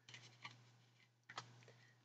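Near silence: room tone with a low steady hum and two faint ticks, about half a second in and again around a second and a half.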